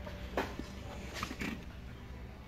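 Quiet steady background hum, with one faint short knock about half a second in and faint distant voices.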